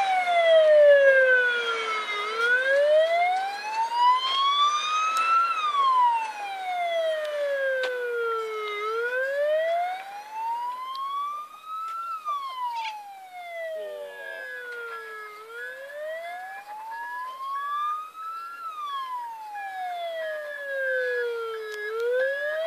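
Ambulance siren on a slow wail, sweeping up and down about every six and a half seconds and growing fainter as the ambulance drives off across the course. From about two-thirds of the way through, a faint rapid beeping joins in.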